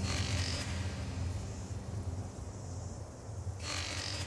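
Low, steady droning soundtrack bed, with a whooshing swell at the start and another near the end.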